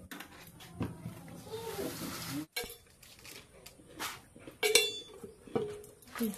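A large metal tin tilted over a steel bowl, with a rising rushing hiss of dry contents pouring out that stops abruptly about two and a half seconds in. Then a few sharp metallic clinks of kitchen dishes, the loudest one ringing briefly.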